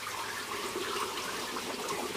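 Water pouring steadily from a perforated pipe into an aquaponics fish tank, a continuous splashing flow.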